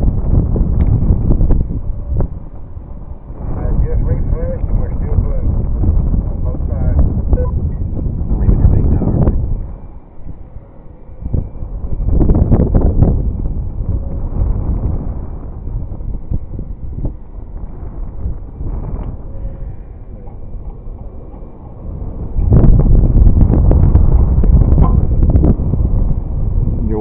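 Wind buffeting the microphone, a loud low rumble that gusts and eases, dropping away briefly about ten seconds in and surging again near the end.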